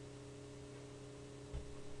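Steady low electrical hum, mains hum picked up by the recording setup, with a low thud starting near the end.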